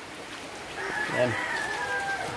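A rooster crowing in the background, one long call that falls slightly in pitch over the second half, over the steady hiss of heavy rain.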